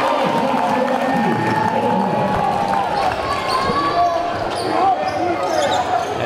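A basketball bouncing on a hardwood gym floor over the continuous chatter of voices in a large gymnasium.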